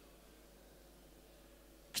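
Near silence: faint room tone with a low steady hum, broken right at the end by a short sharp onset as a man's voice starts.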